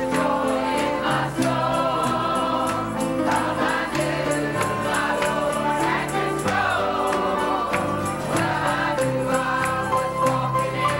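Church choir of mixed women's and men's voices singing a gospel hymn together over instrumental accompaniment with a steady beat.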